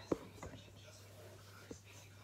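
Smartphone being handled and set down on a bed: a sharp knock just after the start, a couple of softer taps later, and faint rustling over a steady low hum.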